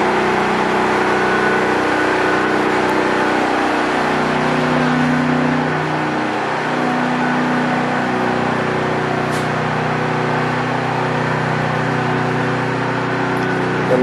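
Engine-driven generator running steadily: a continuous mechanical hum with several held low tones.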